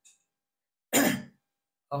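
A man clears his throat once, a short rough burst about a second in, between stretches of near silence.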